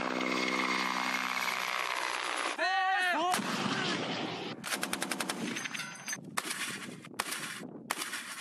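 A military helicopter flying with a steady hum, a short shouted call a little under three seconds in, then automatic gunfire in rapid bursts from about four and a half seconds on.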